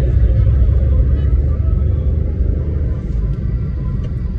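Steady low rumble of a car being driven, heard from inside the cabin: road and engine noise.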